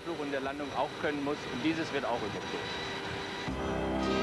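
A man speaking, then background music with held chords fades in near the end over a low rumble.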